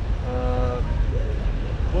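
Steady low outdoor rumble of urban background noise. About a quarter second in, a short flat held tone lasts roughly half a second, and a single spoken word comes at the very end.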